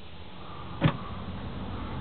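Wooden overhead cabinet door giving a single sharp click as it is swung open off its catch, over a steady low hum.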